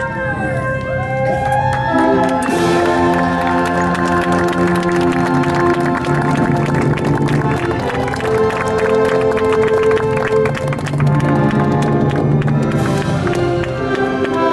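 Orchestral music with brass playing held chords that change every second or two, over a crowd's applause and cheering.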